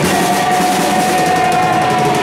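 Live rock band playing loud, with drums and electric guitars. One long note is held steady from just after the start to the end, sung by the lead vocalist.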